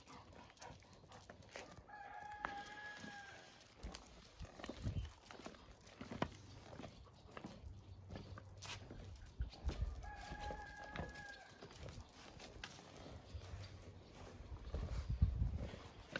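A rooster crowing twice, each crow a held call of about a second and a half, the two about eight seconds apart. Low rumbling bumps come and go underneath, loudest near the end.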